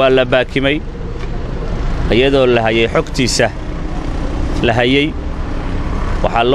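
A man speaking Somali in short phrases with pauses, over a steady low rumble.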